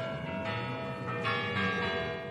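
Church bells ringing, with new strokes about half a second in and again past a second, each stroke ringing on over the last.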